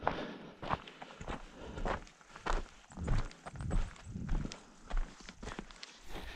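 A hiker's boot footsteps on a stony gravel track, at a steady walking pace of about ten even steps.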